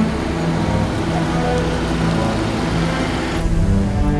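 A car driving along a cobbled street: a steady rush of tyre and road noise that cuts off shortly before the end. Background music with sustained low string tones plays throughout.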